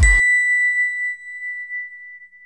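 Outro music cuts off just after the start, leaving a single bell-like chime of the logo sting that rings on one clear tone and slowly fades away.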